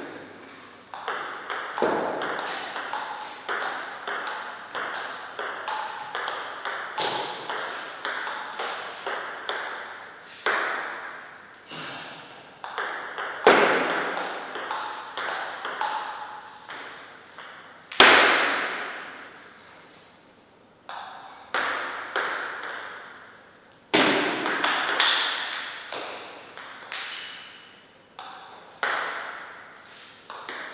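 Table tennis rallies: the plastic ball clicks in quick succession off the paddles and the table, with short gaps between points. A few louder sudden sounds, about 13, 18 and 24 seconds in, ring out in the hall's reverberation.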